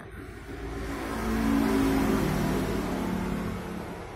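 A motor vehicle's engine passing by, swelling to its loudest about two seconds in and then fading away.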